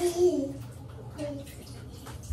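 Baby making a short vocal sound that falls in pitch at the start, then another brief one about a second in, with light splashing of bath water.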